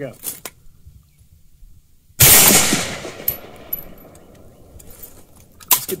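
A single shot from a PSA AK-47 Gen 3 rifle firing 7.62×39 mm, about two seconds in: one sharp report that dies away over about a second.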